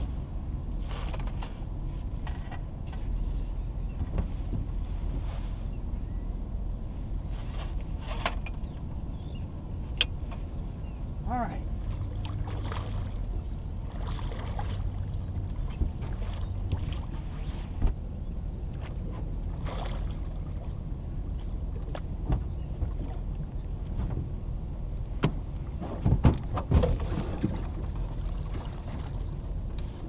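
Steady wind and water noise around a small aluminium fishing boat, with scattered knocks and splashes while a large blue catfish is fought at the side of the boat. A few short vocal sounds from the angler come around the middle and near the end.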